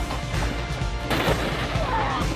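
A boy belly-flopping onto a plastic saucer sled in the snow, heard as a short burst of impact and scraping noise about a second in. Background music plays throughout.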